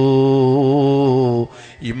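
A man's voice intoning one long held note in a chanted Islamic sermon, steady in pitch with a slight waver. It breaks off after about a second and a half, and his voice picks up again near the end.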